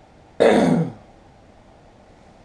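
A man's short, loud vocal noise about half a second in, falling in pitch, like a throat clear; otherwise only quiet room tone.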